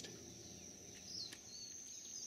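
Faint outdoor ambience: a steady high-pitched insect drone, with a few short bird chirps a little past the middle.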